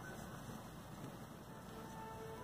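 Faint room tone, a quiet steady hiss, with one soft click at the very start.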